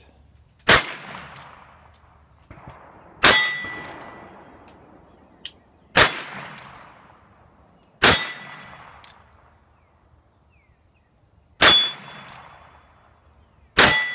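Six shots from a Ruger Bearcat revolver, each followed at once by the ring of a struck steel target plate, spaced two to three and a half seconds apart. The hits alternate between small plates and a big plate, and the ringing pitch changes from hit to hit.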